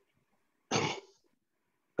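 One short cough from a person, a little under a second in.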